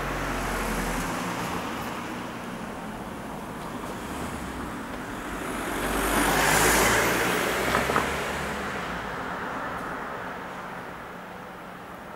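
Road traffic: a car passes by, its tyre and engine noise swelling to the loudest point about seven seconds in and then fading away, over a steady background hum of traffic.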